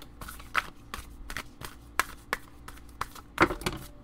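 A deck of oracle cards being handled: a quick run of light taps, flicks and slides as cards slip and fall out of the deck onto a cloth-covered table, with one louder slap about three and a half seconds in.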